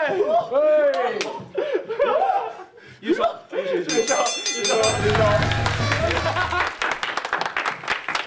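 A group of men laughing and shouting. About four seconds in, a short musical jingle plays, with a low bass note underneath for a couple of seconds, while the group breaks into hand clapping that runs to the end.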